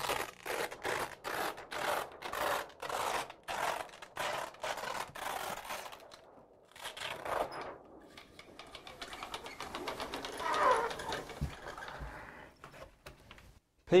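Velcro (hook-and-loop) strips being peeled apart along the edge of a roller blind. First comes a series of short rips, about two a second, then after a brief pause a longer run of fine crackling.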